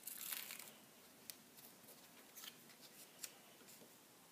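Faint rustling of paper, card and ribbon being handled and pressed into place, strongest in the first second, followed by a few light ticks; otherwise near silence.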